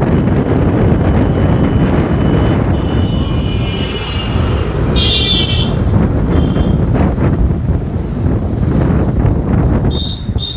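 Wind buffeting the microphone over the running of a motorbike riding along a street. A vehicle horn sounds about five seconds in, and two short toots come right at the end.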